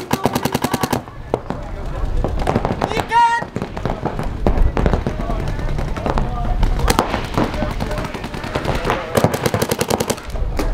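Paintball markers firing rapid strings of shots: a fast burst in the first second, scattered shots through the middle, and another fast burst near the end.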